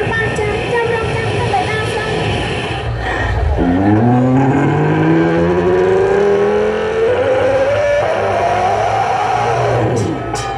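A female singer holds a long, wavering note into an amplified microphone, the Lakhon Basak accompaniment behind her. About three and a half seconds in, her voice gives way to a low, many-toned instrumental note that slides slowly upward in pitch for several seconds.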